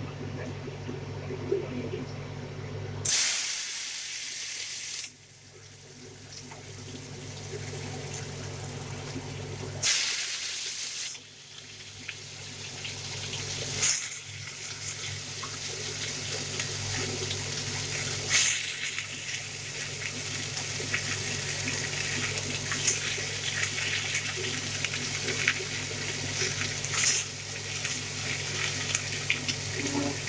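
Diced pumpkin frying in hot mustard oil in an aluminium kadai. There are loud surges of sizzling about three seconds in and again about ten seconds in, then a steady sizzle that slowly grows louder.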